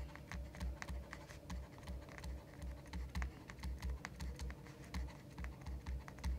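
Stylus writing on a tablet screen: a quick, irregular run of faint taps and clicks with dull low knocks, like light typing, as each letter is stroked out.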